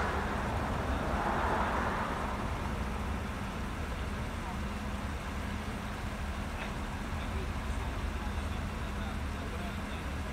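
Idling vehicle engines and road traffic: a steady low hum, with a wider rush that swells and fades in the first two seconds.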